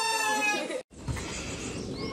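A small green-and-yellow plastic toy horn blown by a child: one buzzy, steady note that sags slightly in pitch and cuts off abruptly less than a second in. After it, a steady low background noise.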